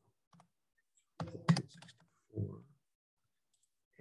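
Typing on a computer keyboard: a quick run of keystrokes about a second in, followed by a softer tap.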